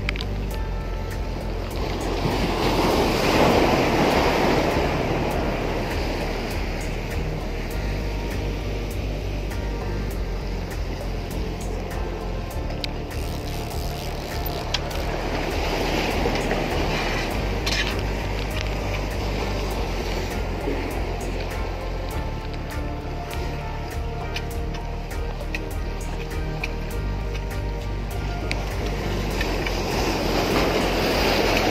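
Background music of held chords, laid over sea waves washing against shore rocks. The wash swells louder about three seconds in, again halfway through, and near the end.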